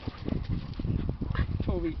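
A Shiba Inu and a black dog playing right at the microphone, making rough, low, irregular noises. A man's voice begins near the end.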